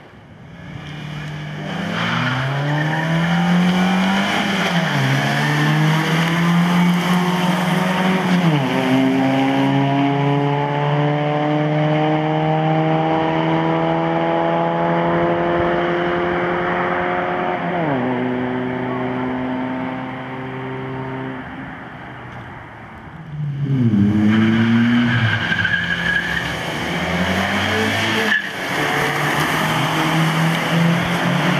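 Car engines accelerating hard, their note climbing steadily in pitch and dropping sharply at each gear change, about 8 and 18 seconds in. The sound fades briefly, then another car's engine revs up loudly about 24 seconds in.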